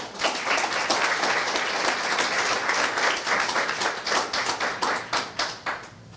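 Audience applause: many people clapping at once, thinning to scattered claps and stopping near the end.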